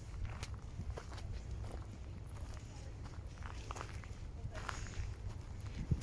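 Footsteps crunching on dry dirt and grass, as a string of irregular short clicks over a steady low rumble.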